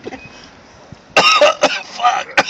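A person coughing and gagging in short, harsh outbursts that begin a little past a second in, after a fairly quiet first second; it is the gag that skunk smell brings on.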